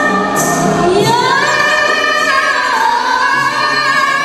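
Young women's voices singing an Islamic qasidah song together, holding long melismatic notes with a smooth upward slide about a second in.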